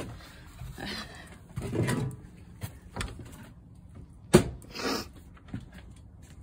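Quiet handling noises in a small room, with one sharp knock about four and a half seconds in, then a short hiss.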